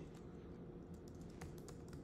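Faint typing on a computer keyboard: a few scattered keystrokes, most of them in the second half.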